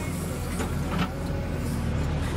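JCB 3DX backhoe loader's diesel engine running steadily under load, a deep drone as heard from inside the operator's cab while the hydraulic levers are worked. A brief hiss rises over it about a second in.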